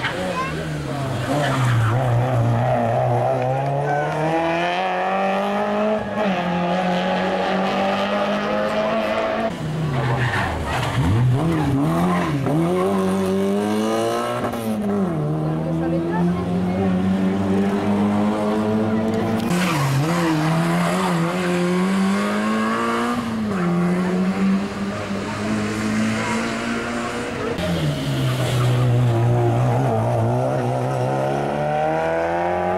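Rally car engine revving hard, its note repeatedly climbing and then dropping sharply through gear changes and braking, for the whole stretch as the car comes along the special stage.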